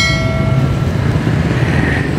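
A bright bell-like notification chime rings out and fades within about a second, over a steady low rumble of street traffic.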